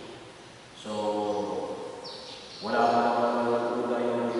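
Liturgical chant: a voice sings long, steady held notes in a near monotone, pausing briefly near the start and again about two seconds in before coming back louder.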